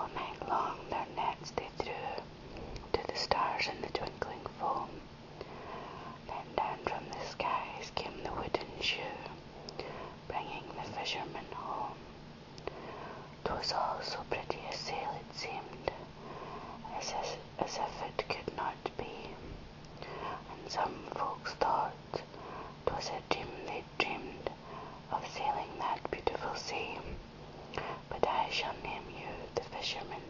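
Soft, close whispered speech: a poem read aloud in a whisper, with crisp hissing consonants and small mouth clicks.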